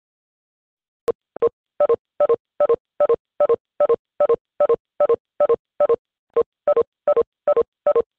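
Video-conference call tones: short two-beep electronic chimes repeating rapidly, about two to three a second, starting about a second in. Each marks a participant leaving the call as the meeting ends.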